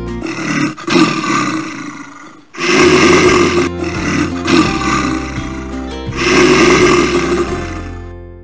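A roar sound effect edited in, in three long bursts, the second starting suddenly and the last fading away at the end, with background music underneath.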